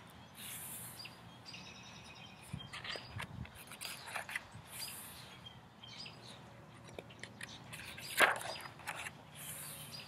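Birds chirping in the background while the pages of a hardcover picture book are handled and turned, the page-turn rustle loudest about eight seconds in.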